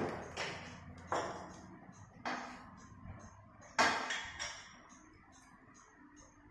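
Sharp metallic knocks from hand tools on the underside of a car during engine-mount replacement, four of them about a second apart, each ringing briefly, followed near the end by a run of light, evenly spaced clicks.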